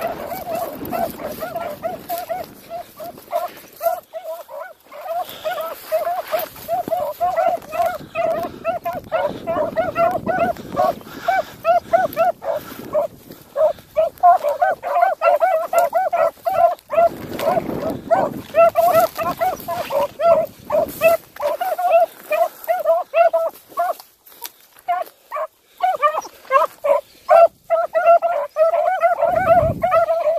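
Beagles baying in a fast, nearly unbroken string of short high yelps, the cry of hounds running a rabbit's scent trail. The cries thin out briefly about three quarters of the way through.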